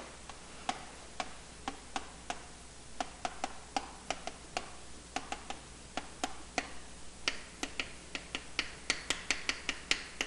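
Chalk tapping and scratching on a chalkboard as a line of handwriting is written: a quick, irregular run of sharp clicks, several a second, from each stroke hitting the board.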